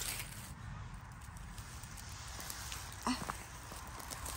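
Faint rustling in dry leaf litter over a steady low rumble of microphone handling. A short voiced "ah" about three seconds in.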